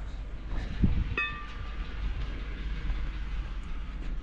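Metal brake rotor being set down on concrete: a knock about a second in, then a short metallic ring, over a steady low rumble.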